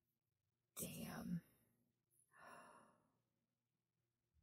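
A woman sighing: a short, sharp voiced breath about a second in, then a softer, breathy exhale.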